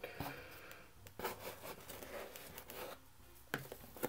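Faint rustling and a few light taps of hands and trading cards on a tabletop.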